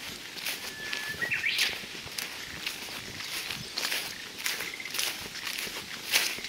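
Footsteps swishing through long grass, about two steps a second. A brief thin high whistle sounds about a second in.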